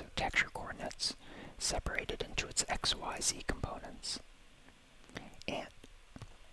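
A man whispering close to the microphone, ASMR-style, with a short lull about four seconds in.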